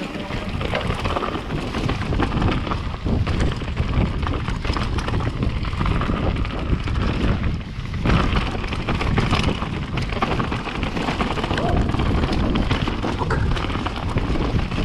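Mountain bike riding fast down a dirt trail: wind rushing over the bike-mounted camera's microphone, with tyre rumble and the frame and parts rattling and knocking over rough ground.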